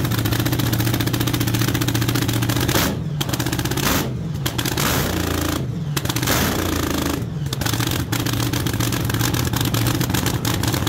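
Supercharged Hemi V8 of a front-engine top fuel dragster, running on nitromethane, cackling loudly at idle. Its note changes several times in the middle as the throttle is worked.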